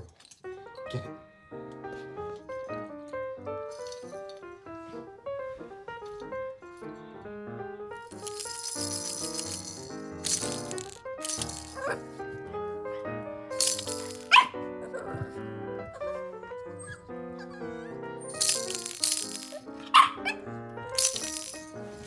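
Instrumental background music plays throughout. From about eight seconds in, a baby's rattle toy is shaken in about six short bursts over the music.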